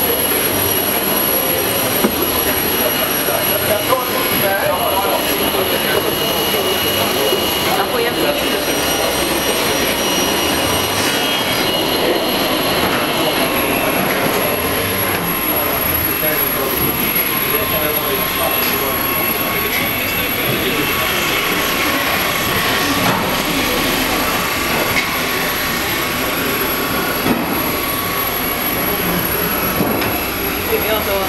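Boatyard workshop ambience: a steady run of machinery noise with faint high steady whines, small knocks and indistinct voices.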